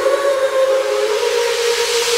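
Breakdown in a hardcore/frenchcore track: the kick drum and bass drop out, leaving a held synth note with a hissing noise sweep that grows brighter, building toward the drop.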